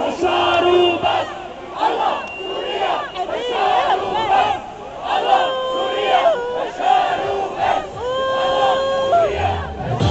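A large crowd of demonstrators shouting and calling out together, many voices overlapping, with long drawn-out cries.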